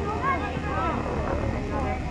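Several voices shouting and calling at once across an outdoor soccer field during play, over a steady low rumble.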